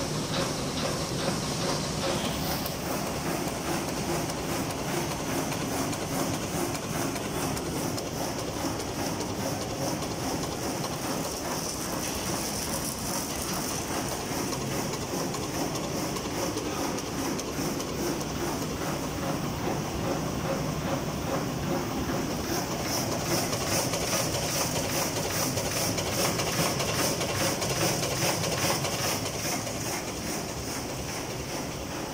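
A roll-to-sheet paper cutting machine running, its cross-cutter knife clacking in a fast, even rhythm at about 140 cuts a minute over the steady running noise of the rollers and drive.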